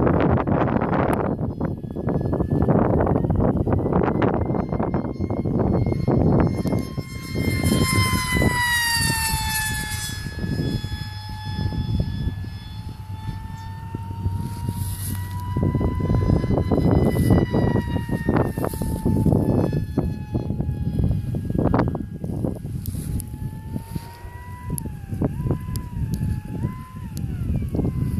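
High-pitched whine of an electric RC plane's motor and propeller on a 4S battery flying overhead. Its pitch drops between about seven and ten seconds in as it passes, and jumps up and down with throttle changes near the end. Gusts of wind rumble on the microphone throughout.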